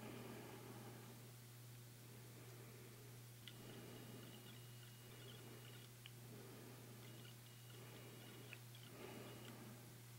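Near silence: a low steady hum with faint rustling, a few small clicks, and twice a faint thin high whine lasting two to three seconds.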